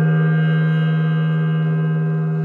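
A gong ringing out after a single strike: a low, steady tone with many overtones, fading slowly.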